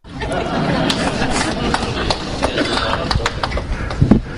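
Audience clapping with chatter mixed in. It starts suddenly and is dense and loud.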